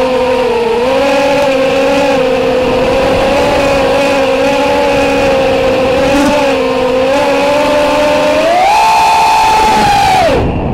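Brushless motors and propellers of a Neato180 FPV quadcopter whining in flight, heard up close through its onboard camera. The pitch holds steady with small wobbles as the throttle shifts, then rises sharply near the end as the quad climbs.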